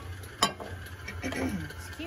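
A glass loaf pan handled on a kitchen counter, giving one sharp clink about half a second in, over a steady low hum.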